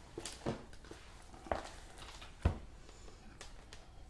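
Quiet kitchen handling: a few light taps and knocks on the worktop, the loudest a single knock about two and a half seconds in, as a cake on its cake board is set down.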